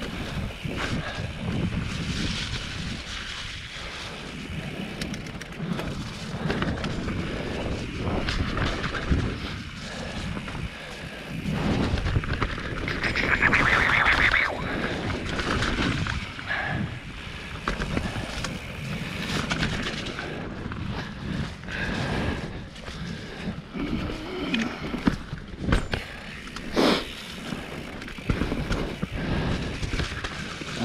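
Mountain bike rolling down a dirt singletrack: tyre noise on the trail and wind on the microphone, with frequent knocks and rattles from the bike over bumps, louder for a stretch about halfway through.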